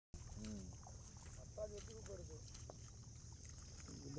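Faint outdoor ambience: distant voices talking, over a steady low rumble and a steady high hiss.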